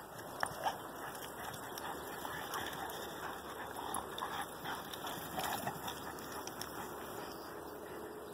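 Rottweiler mother and puppies play-fighting on grass: scuffling with occasional short dog sounds, and two brief louder sounds just under a second in.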